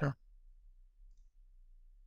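A spoken word cuts off right at the start, followed by faint, near-silent room tone with a steady low hum.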